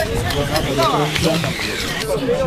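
Indistinct voices, with calls rising and falling in pitch about a second in, over a steady background hiss.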